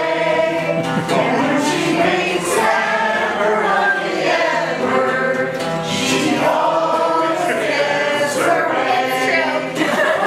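A mixed group of men and women singing a song together, accompanied by an acoustic guitar.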